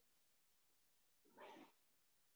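Near silence, with one faint, short sound about a second and a half in.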